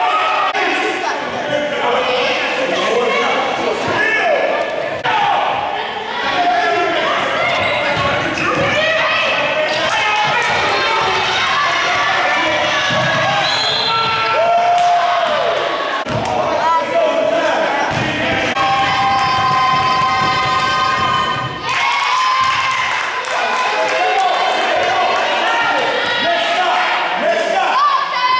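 A basketball bouncing on a gymnasium's hardwood floor during live play, with players' and spectators' voices throughout.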